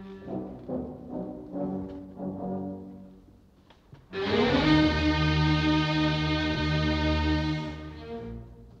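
Opera orchestra in an old 1947 live recording: a run of short, detached low notes, then about four seconds in a loud, sustained brass-led chord held for nearly four seconds.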